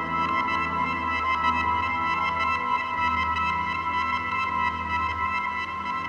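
Ambient synthesizer music: long, steady held tones over a low drone that swells gently.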